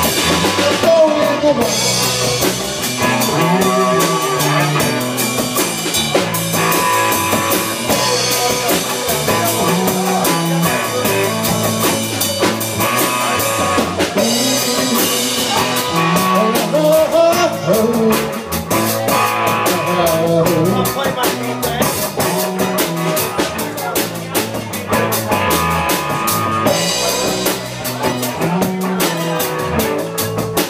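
Live rock band playing: electric guitar and bass over a drum kit, with a steady beat.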